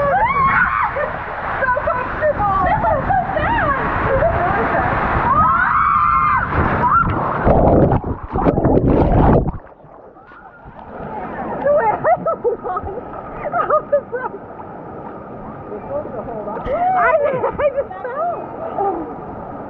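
Rushing water on a tube water slide under shrieking, whooping riders' voices. About nine and a half seconds in, the tube splashes down and the sound drops suddenly to a muffled underwater wash. Then pool water sloshes and the voices laugh again.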